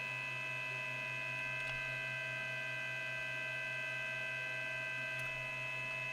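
Steady electrical mains hum with several thin, steady high-pitched whining tones from powered bench electronics; one of the high tones stops about five seconds in.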